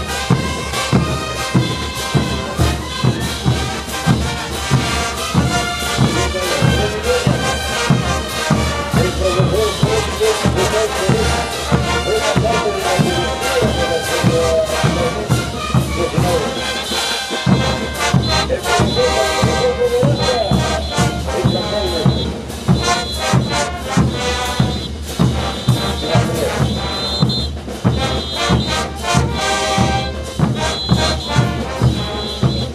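Brass band of trumpets and trombones with bass drums playing dance music, with a steady, regular drum beat under the horns.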